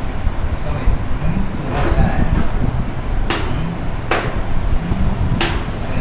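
Chalk striking a classroom blackboard: three sharp taps in the second half, over a steady low rumble.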